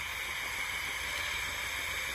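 Steady hiss of radio static from a handheld spirit-box radio with a telescopic antenna, no voice or station coming through.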